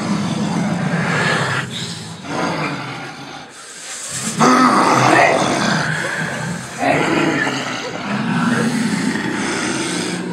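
Loud, rough roaring voicing a costumed dragon in a live performance. It jumps up suddenly about four and a half seconds in, is loudest for about a second, and swells again near seven seconds.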